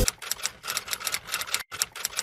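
Typewriter sound effect: a quick, uneven run of sharp key clicks.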